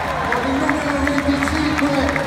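Arena player introductions over the PA: a long drawn-out voice or held note over music with a pulsing bass beat. Underneath are crowd noise and regular sharp clacks from fans banging inflatable thundersticks together.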